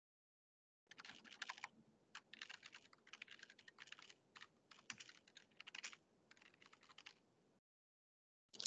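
Faint typing on a computer keyboard: quick clusters of key clicks, starting about a second in and stopping shortly before the end.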